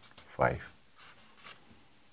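Pen on paper drawing a box around a written answer: a few short, quick scratching strokes, the last about a second and a half in.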